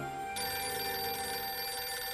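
Corded push-button desk telephone ringing, starting about a third of a second in as soft background music ends.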